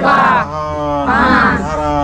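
A group of voices, mostly women's, chanting a prayer in unison, drawing out each syllable as a held note of about half a second that slides from one pitch to the next.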